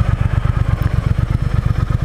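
Triumph Thruxton R's 1200 cc parallel-twin engine running as the bike is ridden slowly, a steady, even low beat.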